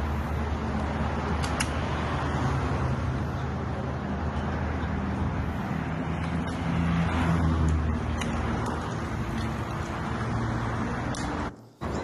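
Roadside traffic noise at a highway crash scene, with a steady low engine hum and a few faint clicks; it cuts off abruptly just before the end.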